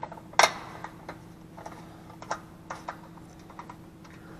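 Hand socket wrench on an extension driving small 10 mm-head bolts into a Honda GXV160 engine's top cover: a sharp metallic click about half a second in, then scattered lighter clicks of tool on metal. A faint steady hum runs underneath.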